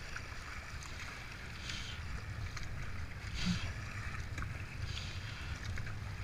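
Kayak paddle strokes splashing into the water about every second and a half over the steady rush of a river rapid, with a low wind rumble on the microphone.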